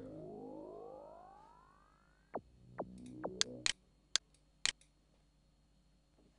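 Synthesizer bass sweep track playing back through a channel EQ with low and high cuts, leaving little of the original sound. One rising pitch sweep fades out over about two seconds, then a handful of short electronic hits drop quickly in pitch.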